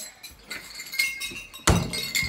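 A mini basketball hits the door once with a sharp thump near the end. Before it there is light metallic clinking with a thin ringing tone.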